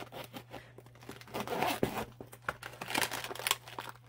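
Holographic plastic zipper pouch crinkling and crackling as it is handled, with its zip pulled open in two longer noisy runs.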